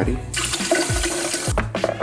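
Water running for about a second, then stopping, over background music.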